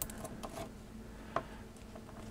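Small brass pin parts and a cartridge fuse from an old Dorman Smith fused-pin plug clicking lightly against each other as they are handled and fitted together: a few soft clicks, the sharpest about a second and a half in.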